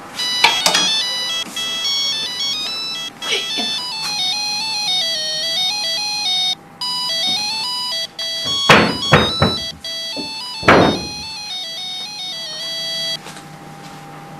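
Mobile phone ringtone playing a looping electronic melody of stepping tones for an incoming call; it breaks off briefly midway and stops near the end. A few sharp knocks sound over it, the loudest in the second half.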